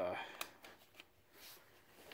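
A drawn-out spoken 'uh', then a single light click of hand handling about half a second in, followed by faint rustling and near quiet.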